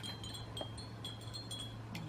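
Wind chimes ringing lightly: several short, high tinkling notes here and there, over a faint steady low hum.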